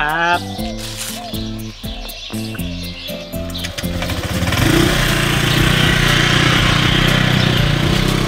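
Background music of short, evenly stepped notes; about four seconds in a motor scooter's engine starts running steadily and becomes the loudest sound.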